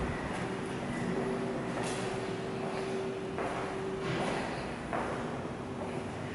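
A steady mechanical hum over a noisy background, with a few brief faint knocks and rustles.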